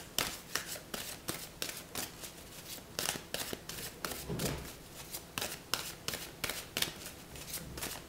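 A deck of tarot cards being shuffled by hand, with the card edges making a quick, irregular run of crisp snaps, about four a second.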